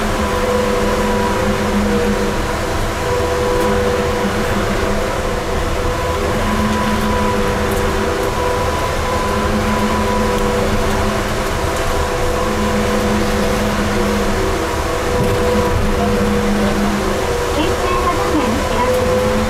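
Electric trolleybus running steadily through a tunnel, heard from inside the cabin: a low rumble with several steady whining tones from the drive.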